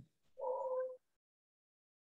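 A single short, high-pitched voiced call lasting about half a second, starting about a third of a second in, coming over a video-call line.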